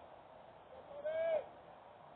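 A single drawn-out vocal call about a second in: a voice holding one note for about half a second, rising slightly then dropping at the end, as in a shout of encouragement from the field or stands.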